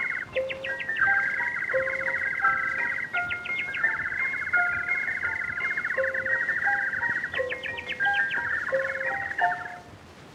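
Imitation birdsong on a 1923 Edison Diamond Disc recording: a fast, high warbling trill with bursts of quick chirps, over short accompaniment notes from the band. It is an instrumental interlude illustrating the blackbirds singing, and it fades out near the end.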